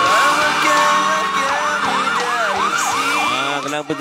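Siren-like electronic sound over music: a steady beeping tone, then from about a second and a half in a fast rising-and-falling yelp of about three swoops a second.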